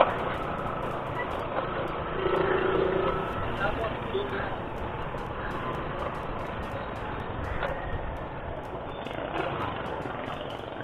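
Motorcycle riding at low speed: steady wind and road noise with the engine running underneath, picked up by a bike-mounted action camera's microphone. A brief louder stretch with a low steady tone comes about two seconds in.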